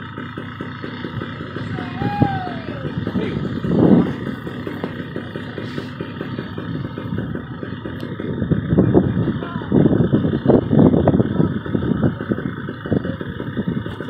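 Wind buffeting the microphone, a steady rumble that swells in gusts about four seconds in and again through the second half.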